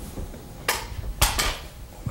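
A table microphone dropped, clattering into the meeting's own sound feed: three sharp knocks, at about two-thirds of a second, just past one second and about a second and a half in, after a couple of faint taps.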